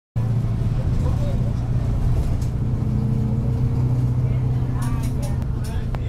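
Steady low engine drone and road noise heard from inside a moving city bus, with faint voices of other passengers in the background.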